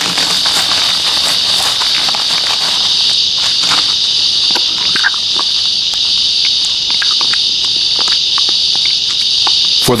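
Steady high chorus of insects, cricket-like, with scattered short clicks and crackles over it.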